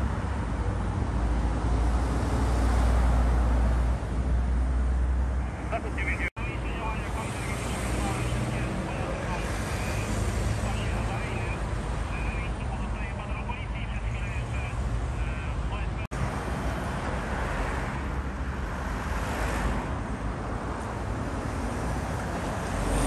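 Steady low rumble of vehicle engines and motorway traffic, with indistinct voices in the background. The sound breaks off for an instant twice, about six and sixteen seconds in.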